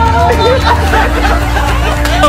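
A small group's overlapping voices, several people calling out and laughing together, over background music with a steady bass.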